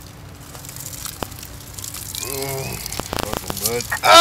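A man's wordless voice from about halfway in, sliding up and down in pitch, over a hiss that grows louder, with a few sharp clicks.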